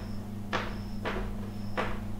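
Chalk writing on a blackboard: three short scratchy strokes as the chalk is drawn across the board.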